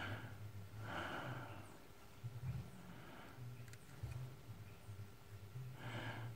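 A man breathing out through his nose in soft puffs, once at the start, again about a second in and again near the end, with a couple of faint clicks from handling in between.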